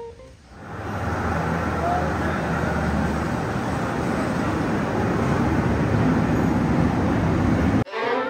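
Peak Tram funicular car rolling into the station platform: a steady, even rumble of station noise, with chatter from the waiting crowd.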